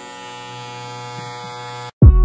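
Electric hair clippers running with a steady buzz, cutting off suddenly just before the end.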